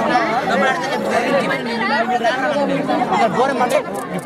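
Several people talking at once: overlapping chatter of voices around a busy street food stall, no single voice standing out.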